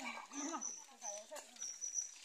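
People talking in the background, with a thin, high-pitched tone that comes and goes.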